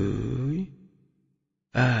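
Speech only: a man's voice slowly counting down in Bengali, saying "dui" (two) at the start. After about a second of silence he begins "ek" (one) near the end.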